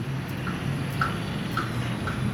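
Steady outdoor background of distant traffic: a low hum under an even hiss, with a few faint short high chirps.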